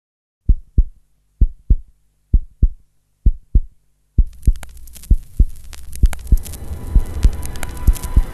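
Heartbeat sound effect: four low double thumps about a second apart, then music with a driving beat comes in about four seconds in.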